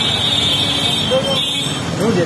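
Street noise with voices in the background and a steady high-pitched tone held for most of the two seconds.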